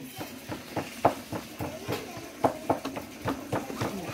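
Hands patting out corn tortilla dough: a quick, fairly even series of soft slaps, about three or four a second, with faint voices behind.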